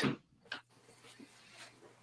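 Faint handling noises of a guitar effects pedal being picked up: one short click about half a second in, then a few soft rustles and taps.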